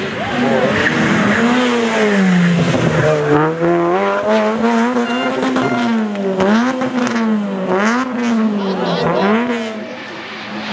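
Rally car engine revving hard as the car comes through a bend and passes close by. The pitch swings up and down again and again, slowly at first, then about once a second in the second half, as the driver works the throttle and gears.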